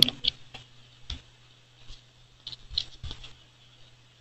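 Computer mouse clicking: a string of short, sharp clicks at irregular intervals, over a faint steady hum.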